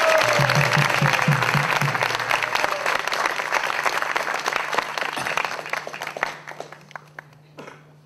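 Audience applause, loud at first and then thinning out and dying away over about seven seconds.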